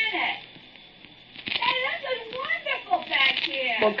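Radio-drama dialogue: after a brief pause, a quieter voice speaks from about a second and a half in, less distinct than the main lines around it.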